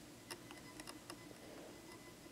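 Near silence with a handful of faint, sharp clicks at uneven intervals over a low steady background hum.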